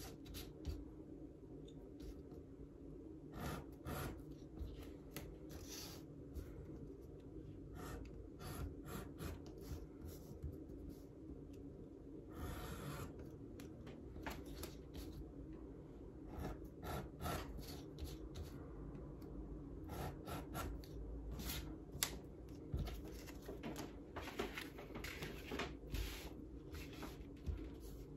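Irregular short scrapes and ticks of a steel awl point and thin laser-cut veg-tan leather pieces against a plastic cutting mat, as the cut-out bits are pushed and picked out of the leather, with one longer scrape about halfway through and a sharper click about two thirds of the way in. A steady low hum runs underneath.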